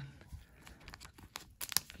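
Cellophane wrapper of a trading-card cello pack rustling and tearing in gloved hands: faint rustling, then a few sharp crackles in the second half.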